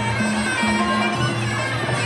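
Traditional Muay Thai fight music (sarama): a reedy pi java oboe plays held, wavering melody notes over steady drumming.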